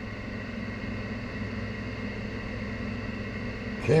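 Steady background hum and hiss, unchanging, with no distinct events.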